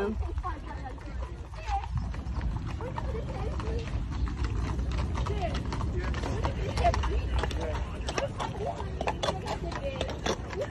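Horses' hooves clip-clopping on asphalt as several mounted police horses walk by, the hoofbeats growing more frequent in the second half. Under them runs a steady low rumble of wind and rolling-bike noise on the microphone.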